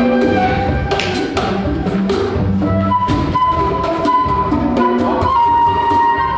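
Live jazz music: a wind instrument plays a melody over percussion, then holds one long note from about halfway, stepping down slightly in pitch near the end, while light percussion taps on.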